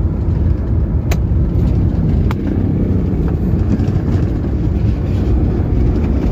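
A car in motion heard from inside the cabin: a steady low rumble of engine and road noise, with two faint clicks about one and two seconds in.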